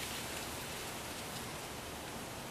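Steady, even hiss of background noise with no distinct events, slowly getting quieter.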